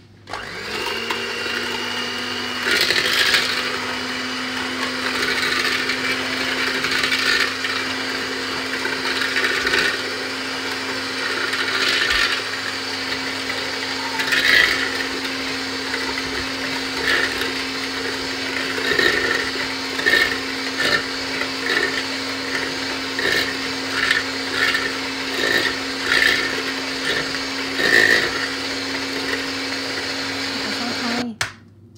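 Electric hand mixer switched on, its motor rising to a steady hum within the first second. It runs at an even speed, whisking sugar, oil and eggs in a plastic bowl, with frequent short clicks and scrapes of the beaters against the bowl.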